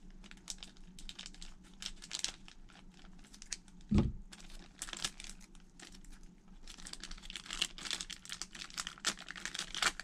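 Thin plastic packaging crinkling and rustling as a sealed plastic bag is cut with scissors and pulled open by hand, with many small clicks. A single thump about four seconds in, and the crinkling grows busier over the last few seconds.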